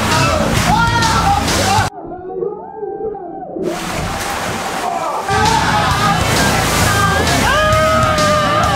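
A mass of water balloons sloshing and squelching as people are thrown and slide through them in a moving truck's cargo box, with shrieking voices and music mixed in. The sound drops abruptly to a thinner, quieter stretch about two seconds in, then the loud jumble returns.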